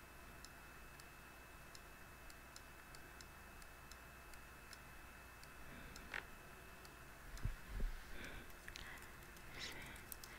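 Quiet room with faint, even ticking throughout. A sharp click comes about six seconds in, then a couple of low thumps, and computer keyboard typing near the end.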